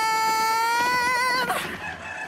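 A single long high note from the playing music video's soundtrack, held for about a second and a half with a waver near the end, then dropping away.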